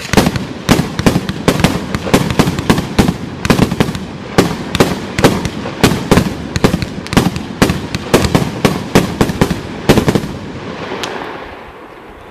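36-shot red palm fireworks cake firing its tubes in a quick string of sharp reports, about three a second. The shots stop about ten seconds in, and the sound dies away.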